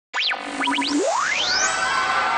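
Cartoon-style sound effect cutting in from silence: a few quick falling whistle swoops, then a held low tone that glides steeply upward into a high sustained tone.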